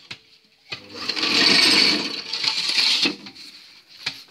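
Fly ash brick mix being tipped from a metal pan and scraped into the steel mould of a manual brick-making machine: a gritty scraping rush of about two seconds, starting about a second in, then a few light knocks.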